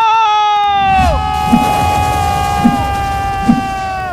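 A man's long drawn-out yell, "serbu!" (charge!), held on one high pitch for several seconds. Beneath it is a low rumble with three dull booms.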